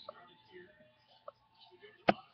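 Near silence: faint room tone with a single small click about a second in.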